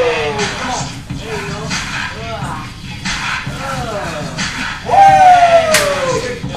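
Wordless hype shouts from onlookers during a krump session, each falling in pitch, the loudest one about five seconds in, over a music beat. A sharp smack sounds just before the end.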